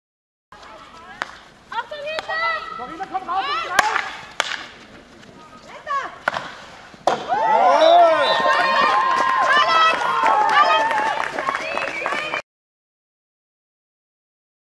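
Several girls' voices shouting on a field hockey pitch, with sharp clacks of hockey sticks striking the ball during the first half. The shouting grows loudest from about seven seconds in, then cuts off suddenly near the end.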